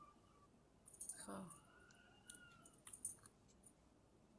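Near silence: faint room tone with a few scattered light clicks, and a faint brief tone about a second in.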